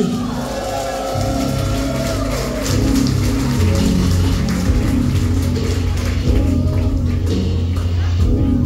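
Live heavy band's electric guitars and bass playing a slow, droning passage through the venue PA, with pulsing low notes that swell about three seconds in into a loud, deep sustained bass note.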